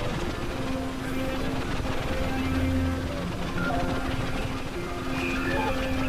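Experimental electronic drone and noise music. Steady synthesizer tones, a low one and a mid one, come and go in stretches of a second or two over a constant noisy hiss.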